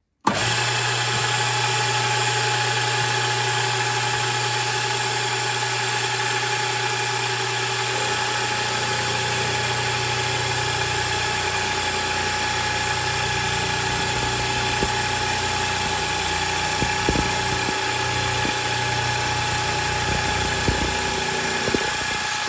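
Milling machine motor starting, then running with a steady whine and hum while a valve-relief cutter cuts into a 92 mm aluminium piston crown. The cut widens and deepens the valve pocket for a big-valve cylinder head, with a few faint ticks from the cutting later on.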